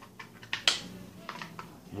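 A handful of light plastic clicks and knocks from the polymer Gen 1 forend of a Kel-Tec Sub-2000 being handled and lifted off the rifle, the sharpest click a little before a second in.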